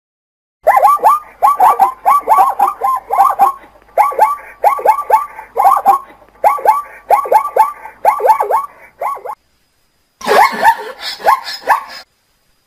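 Plains zebra barking: quick yelping calls in runs of two to four, starting about half a second in and going on until about nine seconds, then after a short pause a harsher, denser run of calls near the end.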